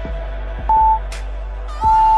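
Two loud, single-pitched electronic beeps over upbeat background music: a short one under a second in and a longer one starting near the end, the signals of a workout interval timer.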